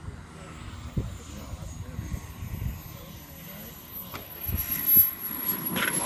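Radio-controlled model HondaJet's engine whine: a thin high tone falling slowly in pitch, with a louder rush building near the end.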